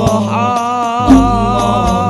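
Al-Banjari shalawat ensemble: voices chanting held, wavering notes over hand-struck frame drums, with a deep drum boom a little after a second in.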